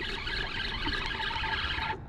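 Wind buffeting the microphone in a steady low rumble, with a faint steady high whine underneath.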